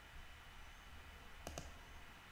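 Two quick, faint clicks of a computer mouse in close succession about one and a half seconds in, selecting the next symbol in a watchlist; otherwise near-silent room tone.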